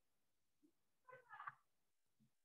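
Near silence over the call audio, broken a little after a second in by one brief, faint pitched cry.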